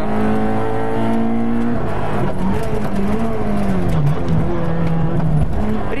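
Fiat 600 Kit rally car's engine heard from inside the cabin, held at steady high revs for about two seconds, then dropping and wavering at lower revs before picking up again near the end.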